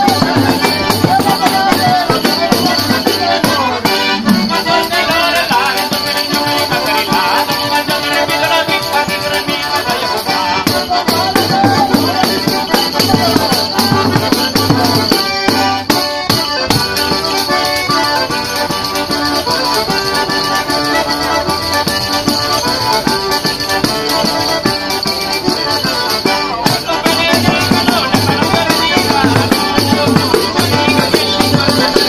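Diatonic button accordion (organetto) and jingling tambourines (tamburelli) playing a castellana, a lively Marche folk dance tune, with a quick steady beat and the tambourine jingles shimmering continuously.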